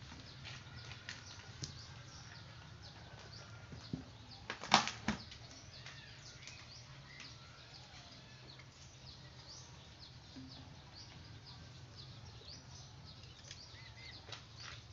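Small birds chirping off and on over a low steady hum. About four to five seconds in comes a brief cluster of sharp rustling knocks, the loudest sound.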